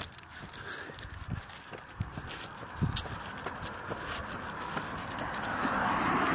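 Footsteps on a footpath, a string of uneven knocks at walking pace, with the noise of passing traffic swelling near the end.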